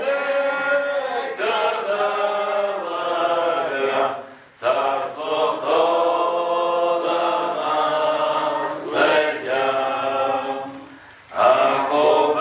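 A group of voices singing a hymn together without instruments, in long held phrases with short breaks about four and a half seconds in and near the end.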